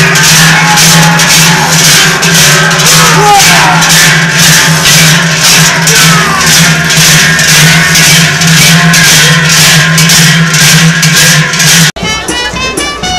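Many large cowbells, worn strapped to the backs of costumed carnival dancers, clanking together in a steady marching rhythm of about three strokes a second over a sustained ringing drone.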